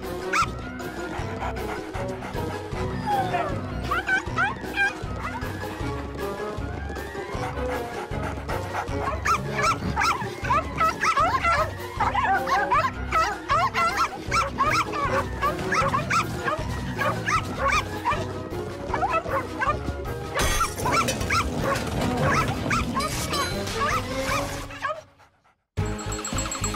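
Cartoon background music with animated puppies yipping and barking over it. The music fades out about a second before the end.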